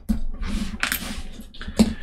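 Hands handling a small wooden model part and tools on a cutting mat: a run of light clicks and knocks with a low rustling rumble, the sharpest click near the end.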